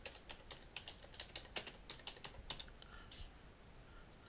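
Faint typing on a keyboard: a quick, irregular run of light key clicks as a short note is typed in.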